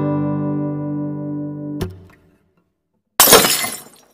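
Logo intro sound: a guitar chord rings and fades, then is cut off with a click just under two seconds in. After about a second of silence comes a short, loud, noisy crash that fades out near the end.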